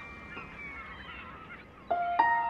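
Faint honking bird calls, wavering up and down, under the fading ring of piano notes; a new piano note is struck near the end.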